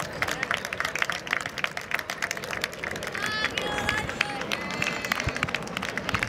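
Children's high voices shouting over many sharp hand claps, as a young football team celebrates.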